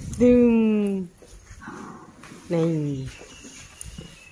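A woman's voice in two drawn-out, sing-song syllables, each falling in pitch, about two seconds apart.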